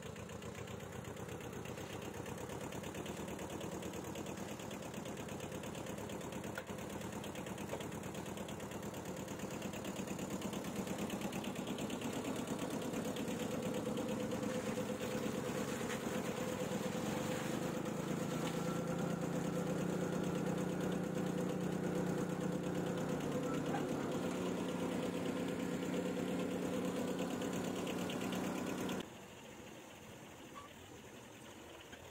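Kubota compact tractor's small diesel engine running at idle, growing louder through the second half. The sound drops away suddenly near the end.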